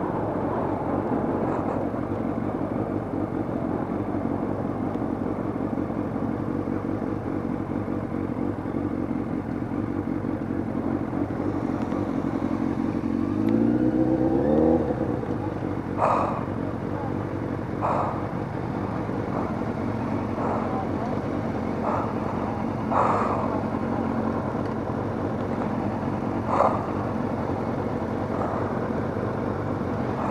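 Motorcycle engine running steadily, heard from on the bike with wind noise; about 13 seconds in the revs rise briefly, then settle back. In the second half several short sharp sounds cut through the engine.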